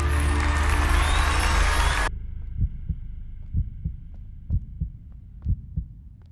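Loud music cuts off abruptly about two seconds in. A heartbeat-style suspense sound effect follows: low thumps about twice a second over a faint steady drone.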